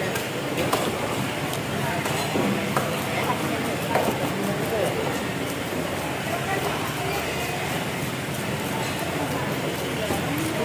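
Fish scaler scraping the scales off a large fish in many quick, irregular strokes, over a background of people talking.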